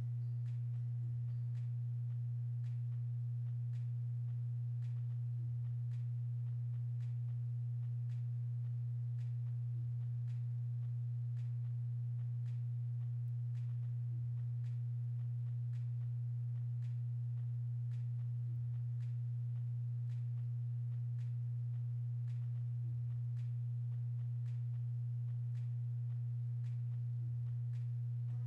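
A steady low-pitched hum that holds one constant pitch, with fainter higher overtones and faint evenly spaced ticks. No engine, crash or crowd sound stands out over it.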